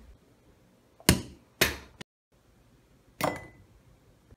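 A mini basketball hitting hard surfaces: two sharp knocks about half a second apart, then after a brief break a third knock with a short ring.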